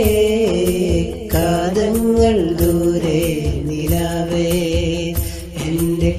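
Malayalam Islamic devotional song: a melodic line that holds and glides between notes over a steady beat, in a stretch without clear lyrics.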